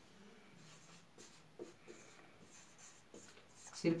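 Marker pen writing on a whiteboard: faint, short scratching strokes scattered through.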